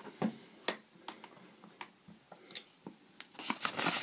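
A few light clicks and taps of a pencil and plastic protractor being handled on paper, with a louder rustle near the end as the protractor is moved away.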